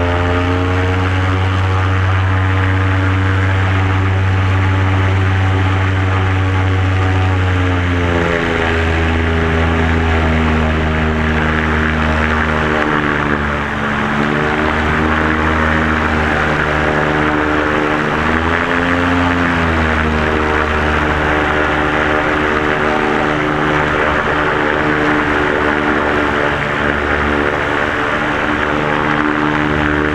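Searey amphibian's propeller engine running at high power as the aircraft runs across the water, settling to a steady pitch after a throttle-up. It dips briefly about 8 and 13 seconds in, then rises and falls once near 19 seconds. A rush of wind and water spray grows louder from about 11 seconds on.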